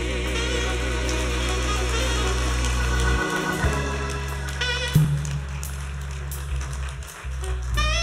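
Instrumental church music: held bass notes under sustained chords and a wavering melody line.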